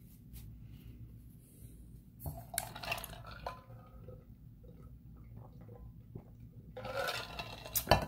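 Faint handling of cardboard baseball cards on a table: light clicks and taps as cards are picked up and set down, with a louder rustle near the end.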